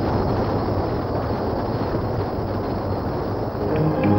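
A loud, steady rushing rumble in the film's song soundtrack, with no clear pitch, cutting in suddenly right after a gong. The dance music's rhythmic beat comes back in near the end.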